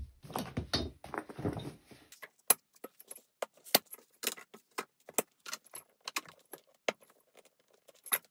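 Hands handling a model frame of aluminium tubes and 3D-printed plastic brackets. First comes about two seconds of plastic rustling and scraping, then a run of sharp light clicks and clinks, two or three a second.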